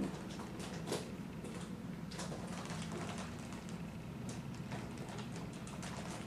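Faint handling noise from a plastic makeup compact held in the hands, with a few soft clicks and rubs over a low steady room hum.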